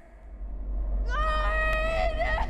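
Film trailer soundtrack over a title card: a deep rumbling drone, joined about a second in by a single high wailing note that slides up, holds, and wavers near its end.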